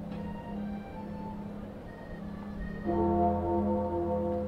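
Bells ringing, their long tones of several pitches overlapping and sounding on together. A louder, fuller strike comes about three seconds in.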